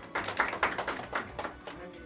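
A short burst of hand clapping from a few people, quick and uneven, dying away about a second and a half in, over faint background music.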